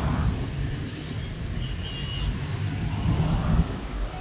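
Roadside traffic passing close by: a steady rumble of engines and tyres that swells a little after three seconds in as a vehicle goes past, with a faint short high tone about halfway through.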